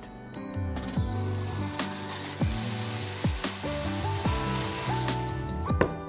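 BlendLab Pro countertop blender running, grinding roasted tomatoes and softened red chillies into a fine paste. It starts about half a second in and stops shortly before the end, with background music playing over it throughout.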